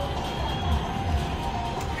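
Slot machine's bonus-round music playing, with steady held tones over a low rumble.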